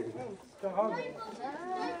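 Voices: a pantomime performer's short exclamation, with children in the audience calling out.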